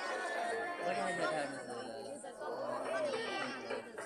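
Several people talking at once, with music faintly behind the voices.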